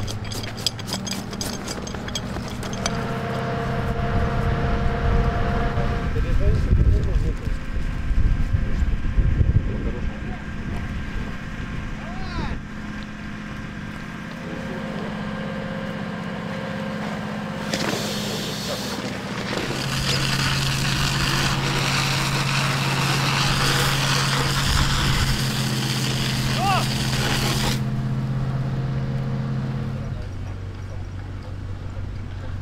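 A vehicle engine running steadily, with outdoor voices in the background and a steady hiss through the second half.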